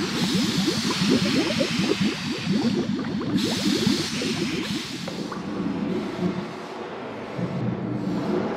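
Animation sound effect of a mass of spheres pouring down: a dense, rapid low rattle of many balls tumbling over one another under a rushing whoosh, thinning out about five seconds in.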